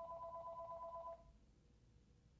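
Faint telephone ring: two steady tones with a fast warble, one ring lasting about a second and a half and stopping a little after the first second.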